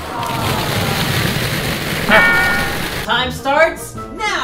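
Dozens of hollow plastic ball-pit balls pour out of a plastic tub and rattle into an inflatable pool: a dense clatter for about two seconds. A held voice and a few words follow near the end.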